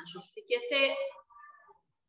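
A woman's voice speaking in a sing-song, with one long, high-pitched drawn-out syllable about half a second in.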